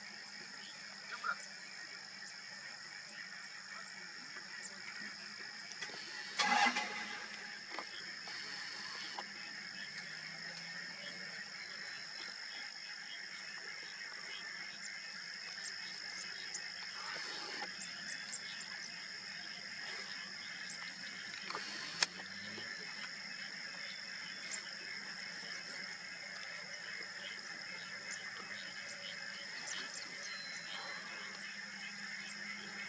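A steady chorus of small calling animals, frog-like, with a constant high ringing drone underneath. A brief louder call comes about six seconds in, a fainter one near seventeen seconds, and a sharp click about twenty-two seconds in.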